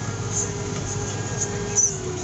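Farm tractor's engine running steadily as it drives along, heard from inside the cab as an even droning hum, with a brief sharp sound near the end.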